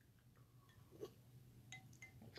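Near silence: faint room tone with two tiny short ticks, one about a second in and one near the end.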